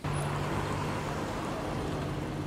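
Steady street traffic noise, with a low, even engine hum under it.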